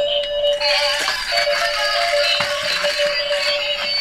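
Several battery-operated toys playing tinny electronic tunes and beeps at once. A steady high beep runs throughout, a second, higher one joins about half a second in, and a few small plastic clicks come through.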